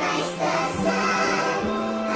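A choir singing a worship song over instrumental accompaniment, pitched up into a chipmunk-like voice, with long held notes.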